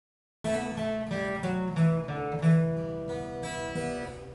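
Steel-string acoustic guitar playing an instrumental introduction, picked notes and chords ringing over one another. It starts suddenly about half a second in.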